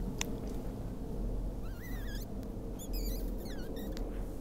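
A small songbird singing: a short warbling phrase about halfway through, then a run of quick, squeaky high notes near the end, over a steady low background hum. A brief soft click comes just after the start.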